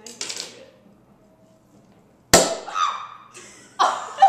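Champagne cork popping out of a Moët & Chandon Impérial bottle: one sharp pop a little over two seconds in, followed at once by women shrieking and laughing.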